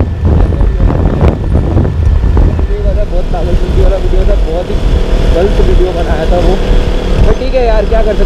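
KTM Duke 200 motorcycle on the move, its engine and heavy wind buffeting on the microphone making a steady low rumble. A faint voice comes in underneath from about three seconds in.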